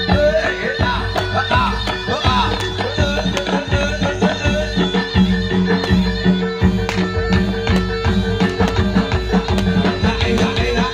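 Live Javanese jaranan dor (reog) ensemble music: steady drum hits over held tones, with a wavering, sliding melody line in the first couple of seconds.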